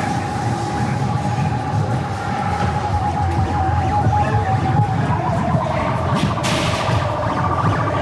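Haunted maze soundtrack: a wavering, siren-like electronic tone over a steady low rumbling drone. About five seconds in, the tone splits into two wavering pitches, one higher and one lower, and a short burst of hiss follows about a second later.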